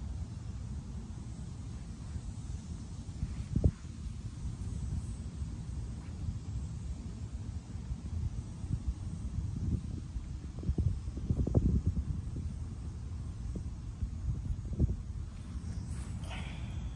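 Low, uneven rumbling on the phone's microphone, swelling louder in places, with a sharp thump about three and a half seconds in and a cluster of louder bumps past the middle.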